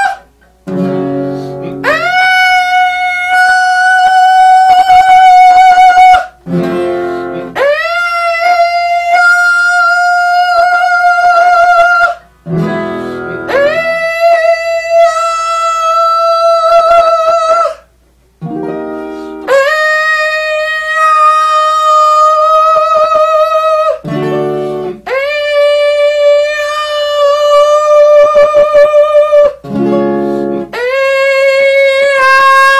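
A vocal warm-up: a short accompaniment chord sounds, then a singer holds one high note for about four seconds, scooping up into it, five times over, each repetition a step lower than the one before. The held notes change vowel colour along the way, a bright vowel-transition exercise that the singer uses to clear mucus from the vocal cords.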